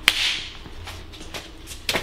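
A sudden sharp swish or whoosh right at the start, fading away within about half a second, followed by a few faint clicks.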